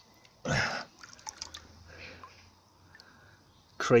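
A brief splash as a hand reaches into shallow stream water to pick out a pottery sherd, followed by faint drips and small clicks of water and pebbles.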